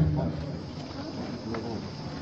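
A faint, steady high-pitched drone in a pause between a man's spoken phrases, with the tail of his voice fading out at the start.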